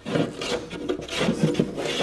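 Steel block plane shaving the wooden rail of a paulownia surfboard in a run of quick, short scraping strokes, taking off the last bit of stock to bring the rail radius lower.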